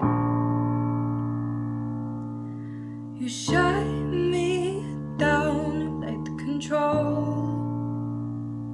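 Keyboard chords, each struck and left to ring out, with a woman singing over them from about three seconds in.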